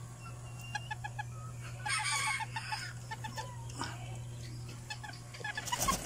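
Serama bantam chicken clucking in quick runs of short, evenly spaced clucks. There is a rustle about two seconds in and a sudden louder scuffle near the end, as a bird is grabbed by hand.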